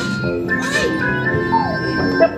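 Electronic music tones from an interactive light-up floor that plays sounds as children step on its pads: several held tones overlapping. A short hiss comes about half a second in and a falling glide near the end.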